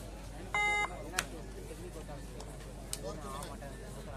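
A single short beep, about a third of a second long and about half a second in, over a steady background of crowd voices.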